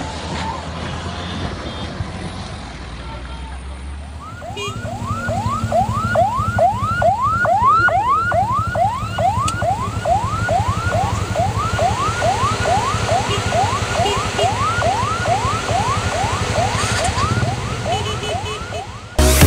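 A siren repeating a short rising whoop about twice a second, starting about four seconds in, over a steady low rumble. The first few seconds hold only a quieter rumbling noise.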